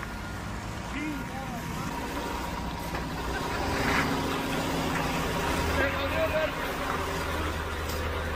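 School bus engine running steadily with a low rumble as the bus drives through freshly poured wet concrete, with faint voices in the background.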